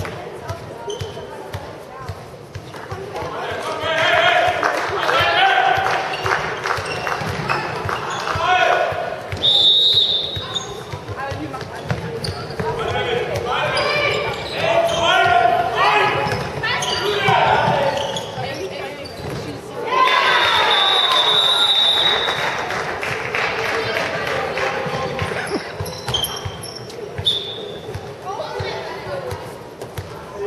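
Handball match in a sports hall: a ball bouncing on the court floor again and again, with players' voices calling out, echoing in the large hall.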